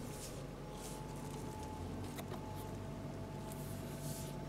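Quiet steady hum of the 2017 Nissan Murano's VQ V6 idling, heard inside the cabin. There is faint brushing of a hand on the leather-wrapped steering wheel and a small click about two seconds in.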